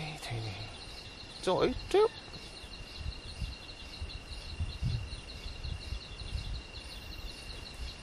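Night insects chirring steadily, a continuous high buzzing tone with a fast pulsing above it. About a second and a half in, two short loud vocal sounds break in, one right after the other.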